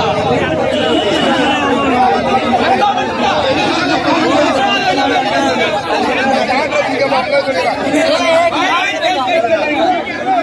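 A crowd of people talking over one another: several loud, overlapping voices and general chatter.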